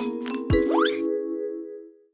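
Short musical logo jingle: a held chord of ringing tones with a low, falling thump about half a second in and a quick rising whistle after it. The chord then fades out to nothing near the end.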